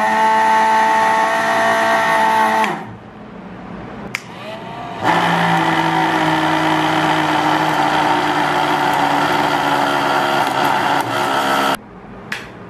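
Small DC motor running at speed with a steady whine, winding down about three seconds in. After a click, it spins up again about five seconds in, runs steadily, and cuts off suddenly near the end.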